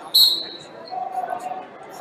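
A referee's whistle, one short high-pitched blast, starting a wrestling bout.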